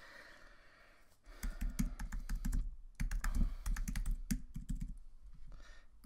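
Typing on a computer keyboard: two runs of quick keystrokes, the first starting about a second in and the second about three seconds in, with a short pause between.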